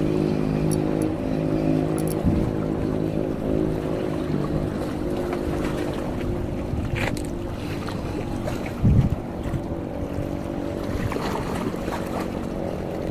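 A steady, low motor drone with several even pitched tones, over wind and water noise; a loud low thump about nine seconds in.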